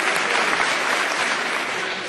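Audience applauding, the clapping fading near the end.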